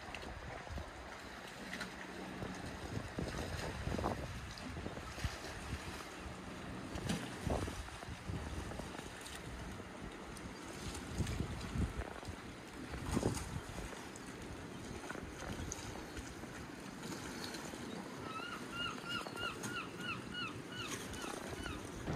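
Sea water lapping and splashing against harbour rocks, a steady wash with occasional louder splashes. Near the end, a quick run of about nine short high calls, about four a second.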